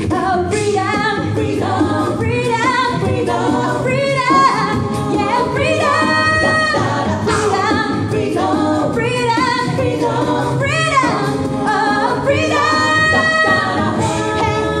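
A cappella vocal group singing live, a woman on lead vocal over the group's backing voices, all amplified through microphones.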